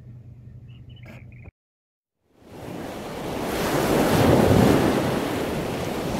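Quiet outdoor background that cuts off to a moment of silence. A loud rushing noise, like surf, then swells in over about two seconds and holds: an added sound effect under the closing card.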